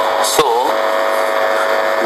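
A steady electrical hum with hiss runs under the recording. It is broken by a short click and a single spoken 'so'.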